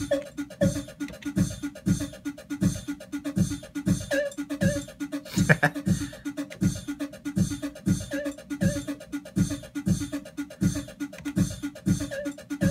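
A looping drum beat from the ER-301 sound computer, made of beatboxed mouth samples (kick, snare and mouth hi-hat) and played back as one-shot samples with a steady low thump about every 0.7 s. The snare runs through a limiter whose pre-gain is being pushed high.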